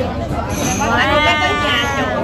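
A woman's long, drawn-out exclamation ("quá"), one held vowel lasting about a second, over the chatter of a busy restaurant dining room.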